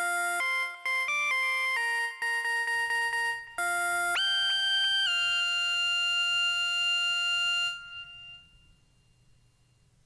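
Electronic synthesizer playing bell-like, ringtone-like notes in a short melody. About four seconds in it jumps up to a held chord that fades out around eight seconds in, leaving only a faint low hum: the track dying out.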